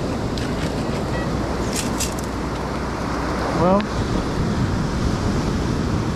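Steady roar of surf washing up over wet sand, with a few brief high rattles about two seconds in.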